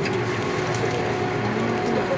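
Airbus A330-243 airliner heard inside the cabin from a seat over the wing as it rolls along the runway for takeoff: steady jet engine noise with a few faint clicks.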